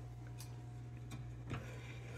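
Faint steady low hum with a few light clicks and taps.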